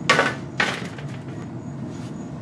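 Two quick handling noises about half a second apart near the start, over a steady low hum.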